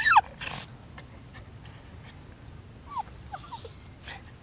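A Bichon–poodle mix dog whining: a loud, sharply falling whine at the very start, a short breathy burst about half a second in, then a few shorter falling whimpers near the end.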